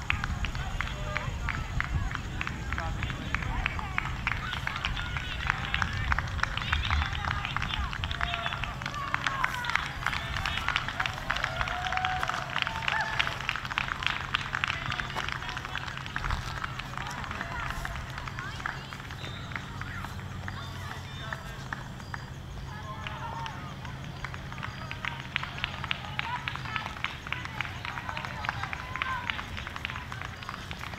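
Indistinct distant voices of spectators calling out along a cross-country course, over a steady low hum.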